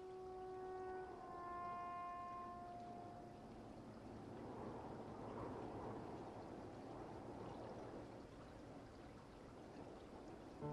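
Held music notes fade out over the first few seconds, then a soft, steady rushing of flowing river water takes over, swelling a little midway.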